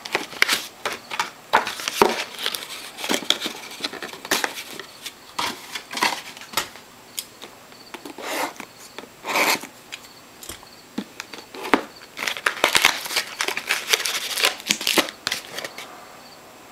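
Plastic wrapping on a trading-card box crinkling and tearing as it is cut open with scissors, in irregular crackles and snips that come thickest near the end.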